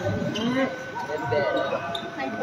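Several people talking at once in a sports hall during badminton play, with dull thuds on the wooden court floor.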